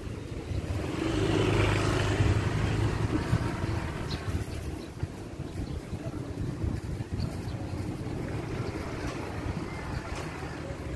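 A motor vehicle's engine, unseen, hums low and steady. It swells over the first few seconds and then fades into low, steady outdoor background noise.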